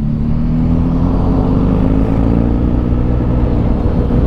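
Inline-four sport motorcycle engine running steadily at cruising speed on the move, with wind rumble on the microphone.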